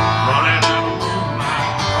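Live country band playing through a large outdoor concert PA, heard from within the crowd, with guitar to the fore in a short gap between sung lines. The singer comes back in right at the end.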